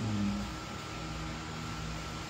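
A woman's short hum, just under half a second long, then steady background hum with a faint high whine.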